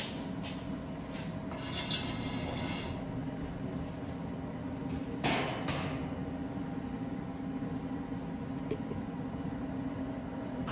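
Countertop convection oven running, its fan giving a steady hum. A short rattle about two seconds in and a sharp knock about five seconds in.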